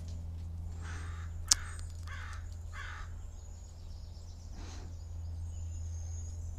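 A crow cawing about four times in quick succession, then once more, fainter, near the end. A single sharp click about a second and a half in is the loudest sound, and a steady low hum runs underneath.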